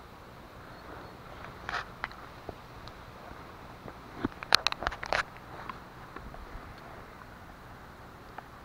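Dry leaves and twigs on the forest floor crackling and snapping as someone moves through the undergrowth, with a quick cluster of sharp snaps and clicks about halfway through.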